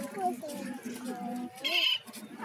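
A gull chick peeping: one short, loud, high-pitched cheep near the end, over people talking in the background.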